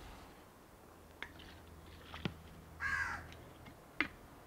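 A single harsh bird call, likely a crow's caw, about three seconds in. Before it come two light clicks about a second apart, from handling on the workbench.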